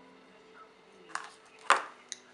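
Two short knocks of a small hard object on a hard surface, a lighter one about a second in and a sharper, louder one near the end, over a faint steady hum.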